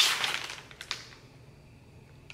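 Plastic supplement packet crinkling as it is handled, fading out within the first second, with a couple of sharp clicks just after.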